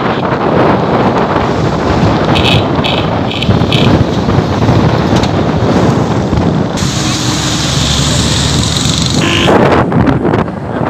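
Wind buffeting the microphone on a moving motorcycle, over the steady noise of the engine and road. A horn beeps four short times about two and a half seconds in, and a higher hiss rises for a couple of seconds near the end.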